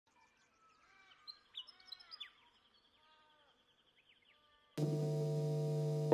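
Faint bird chirps, calls and a short trill. Near the end a held, droning chord comes in suddenly, the start of the song's intro.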